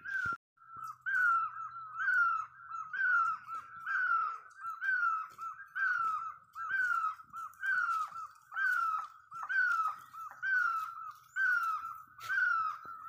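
An animal's high call repeated steadily, about twice a second, each call rising and then falling in pitch.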